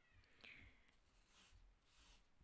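Near silence: room tone with a faint, brief sound about half a second in.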